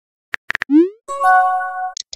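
Phone texting-app sound effects: three quick keyboard-tap clicks, a short rising bubbly pop, then an electronic chime of several tones held together for nearly a second, as a new message arrives.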